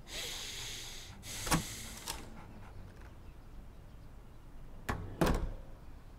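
A door being opened and shut: rushes of noise with a click about a second and a half in, then two sharp knocks close together near the end.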